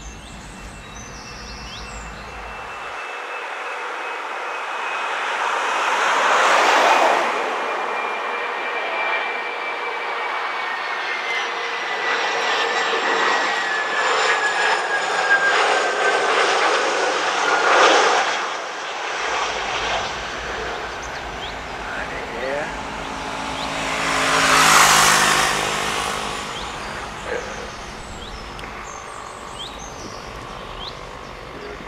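Fokker 100 airliner's twin Rolls-Royce Tay turbofan engines passing low overhead on landing approach. A broad jet rush swells and fades several times, with a thin engine whine that slowly falls in pitch.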